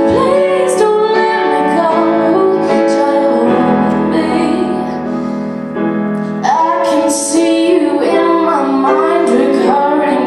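A solo female voice singing a slow ballad, live, over grand piano accompaniment. Around the middle the voice eases off while the piano holds, then comes back in strongly about six and a half seconds in.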